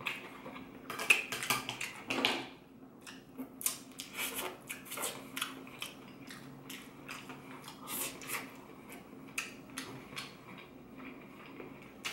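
A person chewing a mouthful of crispy fried chicken and rice, close to the microphone, with irregular small smacks and clicks and a couple of louder mouth sounds in the first few seconds.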